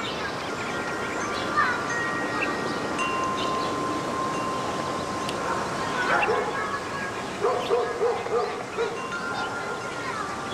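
Wind chimes ringing, several held tones overlapping. About 7.5 s in comes a quick run of about five short lower sounds, like yips.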